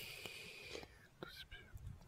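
Near silence with a faint breathy, whispered voice between stretches of talk.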